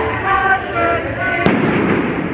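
Voices and singing from a street choir, cut through about one and a half seconds in by a single sharp bang, the loudest sound here, with a short ring after it.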